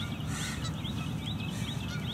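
A bird singing a rapid run of short, repeated chirps, about six a second, over a steady low background rumble.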